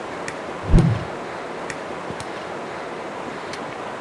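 Steady rushing wind noise on the microphone, with one low thump a little under a second in and a few light footstep ticks on the dirt trail.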